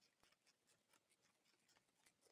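Tobacco hornworm (Manduca sexta) caterpillar chewing a tobacco leaf, heard through a microphone held against the leaf: faint, irregular crisp clicks and rasps, about five a second.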